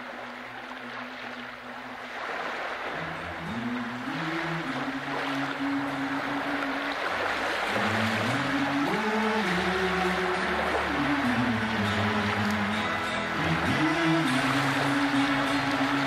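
Live band's instrumental introduction to a slow schlager song, led by keyboards holding sustained chords that change every second or two over a steady hiss. It fades in and grows steadily louder.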